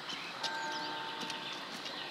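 Quiet outdoor background: a faint steady hum that comes in about half a second in, with a few faint short high chirps.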